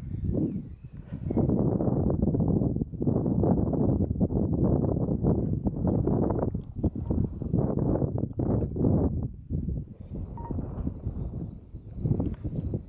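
Wind buffeting the camera's microphone in gusts: a low rushing rumble that swells and drops every second or two, easing briefly about a second in and again near ten seconds. A faint, steady high-pitched tone sounds under it.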